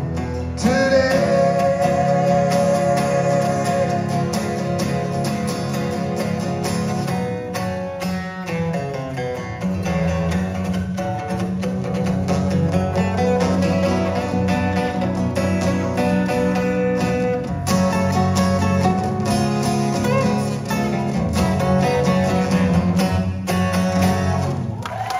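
Two acoustic guitars playing together in a live duo performance, a steady strummed and picked passage with no lyrics sung.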